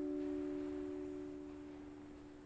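A chord held on a Roland Juno-DS electronic keyboard, a few steady notes slowly fading away.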